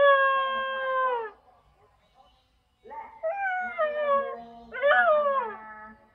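A dog howling: one long held howl that sags in pitch as it ends, then, after a pause of about a second and a half, two more wavering howls, the last rising and then falling away.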